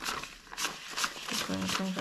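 Paper dollar bills being counted by hand, each note flicked off the stack with a short papery snap, about three a second. Counting aloud comes in near the end.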